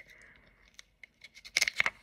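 A quick cluster of small clicks and a brief rustle from fingers handling a plastic powder compact, about a second and a half in, after a quiet stretch.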